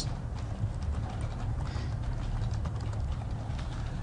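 Computer keyboard typing: an irregular run of light key clicks over a steady low hum.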